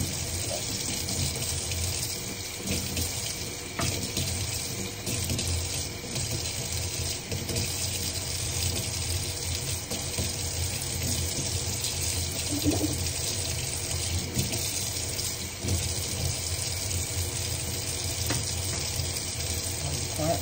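Kitchen faucet running steadily into a sink, a continuous rush of water.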